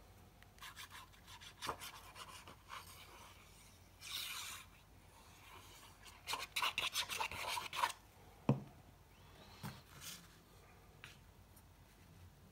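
A glue stick rubbed in quick short strokes across card stock, making a dry scratchy rubbing. About eight and a half seconds in there is a single soft thump, followed by light paper handling as a sheet of patterned paper is laid onto the card and pressed down.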